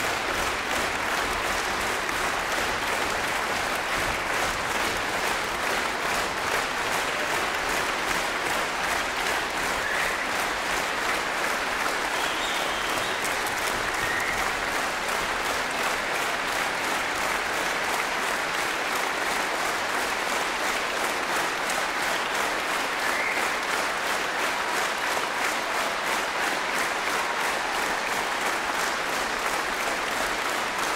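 Concert-hall audience applauding, the clapping falling into a steady regular beat of about three claps a second. A few brief calls from the crowd stand out above it.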